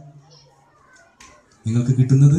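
A pause in a man's microphone-amplified speech, with faint children's voices in the background and a single click about a second in; the man starts speaking again near the end.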